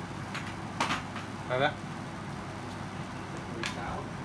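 A few short clicks and scrapes as the sections of a Daiwa telescopic fishing rod are pulled out by hand, over a steady low hum.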